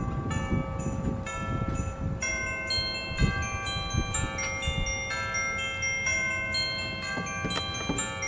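Bell-like music: struck chime or tubular-bell notes in a slow melody, each note ringing on so that many overlap. A low, uneven rumble runs underneath.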